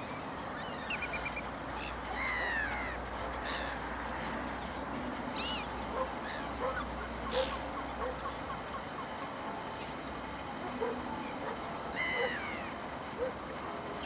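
Wild birds calling: a few harsh calls that slide downward in pitch, a few seconds apart, and a run of short soft notes in the middle.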